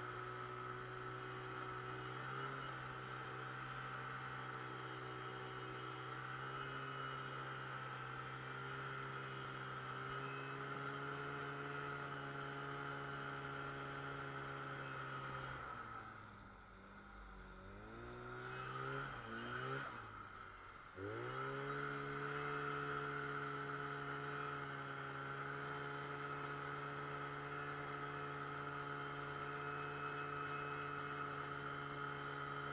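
Snowmobile engine running at a steady cruising speed. About halfway through it slows, its pitch dropping, then revs back up in a couple of surges before settling into steady running again.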